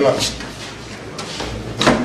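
A wooden door being pushed shut, with a sharp knock near the end as it closes against its frame.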